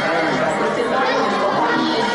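Chatter of a roomful of children and adults, with dance music playing underneath.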